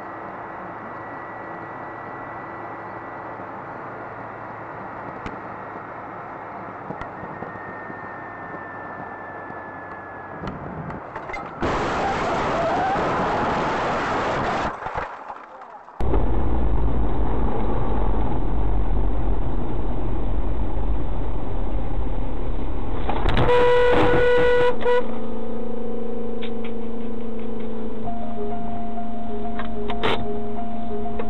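Road and engine noise inside a moving car, recorded by a dashboard camera, changing abruptly in level and character as one recording cuts to the next. Later on, a car horn sounds briefly, for a second or two.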